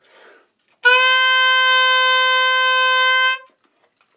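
Oboe playing one long, steady concert C (the C on the third space of the treble staff, about 520 Hz), starting about a second in and held for about two and a half seconds.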